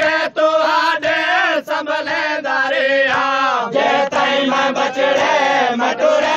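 Voice chanting a Saraiki noha, a Shia mourning lament, in long sung lines that bend and waver in pitch, with short breaks between phrases.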